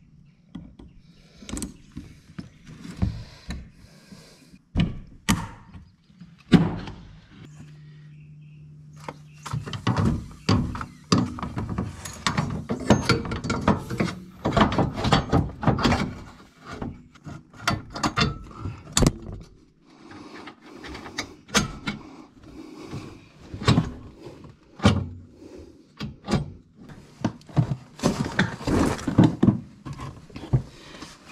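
Irregular clicks, knocks and metallic clanks of hand tools and steering parts as a rack and pinion is handled, with a steady low hum lasting about two seconds roughly a quarter of the way in.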